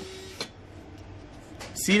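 Faint steady background noise with a low hum, a thin steady tone that stops about half a second in together with a single short click, then a man's voice starting near the end.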